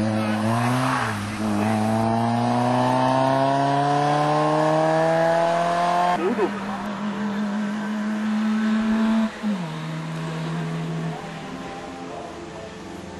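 Race touring car engine pulling away from the hillclimb start, its note climbing steadily for about five seconds, then dropping sharply at a gear change about six seconds in. It holds a steady lower note, drops again near nine and a half seconds, and fades as the car goes away.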